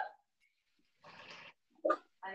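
A short sniff through the nose, about half a second long, starting about a second in, breathing in the smell of a cooking stew; a woman's voice follows at the very end.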